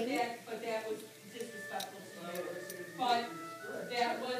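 Indistinct background voices over music.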